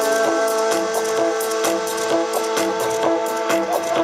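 Electronic dance music from a DJ set playing loud over a festival sound system, heard from within the crowd: held chords over a steady, quick beat.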